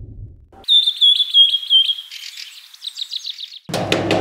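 A low rumble dies away. A songbird then sings a run of repeated sharp chirps, going into a quicker trill. Near the end comes a sudden burst of rapid metallic rattling and knocking, a hand on a steel shutter gate.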